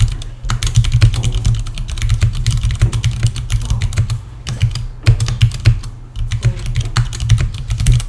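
Typing on a computer keyboard: rapid runs of keystrokes in bursts, broken by a couple of short pauses.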